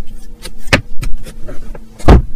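Plastic clicks and knocks from a Tesla Model Y sun visor being handled, its vanity mirror cover shut and the visor folded up, with the sharpest click about three-quarters of a second in. A steady faint hum runs underneath.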